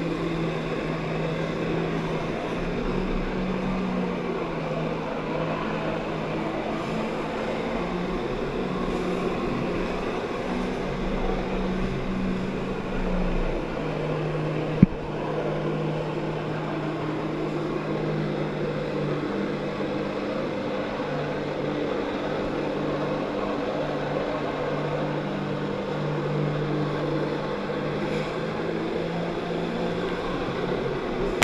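Jet-ski engine running hard to drive a flyboard's water jets, its pitch stepping up and down as the throttle is changed, with rushing water and spray. A single sharp click comes about halfway through.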